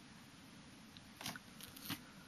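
Three short crackles of clear plastic card-album sleeves being handled, in the second half, over quiet room tone.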